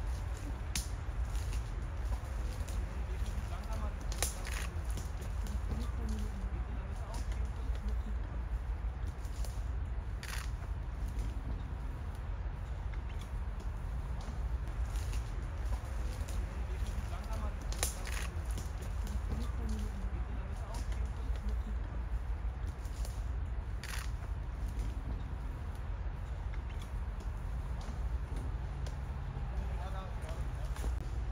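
Faint, indistinct voices of people talking over a steady low rumble, with a few sharp clicks scattered through.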